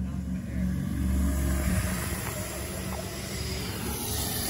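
Two Razor MX500 electric dirt bikes riding past, one stock 36V and one fitted with a 48V lithium battery and 1800-watt Vevor motor. Their electric motors and chain drives give a steady low hum, with a hiss that swells as they go by.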